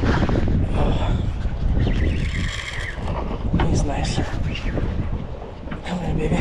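Wind buffeting the microphone over a steady low rumble of boat and sea noise, with indistinct voices of people nearby.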